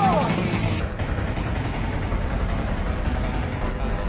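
Many cartoon soundtracks layered over each other into a dense, steady jumble of voices and music with no single clear sound. A falling pitch glide comes right at the start.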